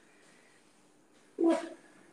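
Quiet room tone, then about one and a half seconds in a single short, loud vocal call lasting under half a second.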